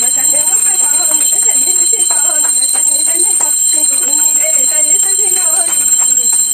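Voices singing a Hindu aarti hymn in worship, with a puja hand bell ringing steadily underneath.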